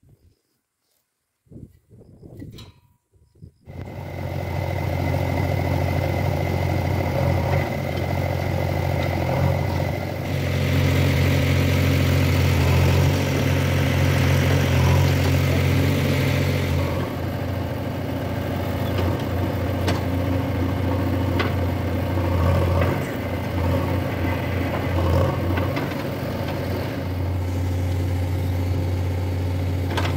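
JCB 3DX backhoe loader's diesel engine running steadily under working load while the backhoe digs soil, coming in loudly about four seconds in after near silence. A brighter hiss rides over it for several seconds in the middle, with a few sharp clinks later on.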